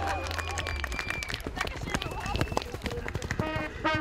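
Hoofbeats of a horse cantering over turf, irregular thuds, under spectators' voices. Near the end brass horns start playing a sustained fanfare.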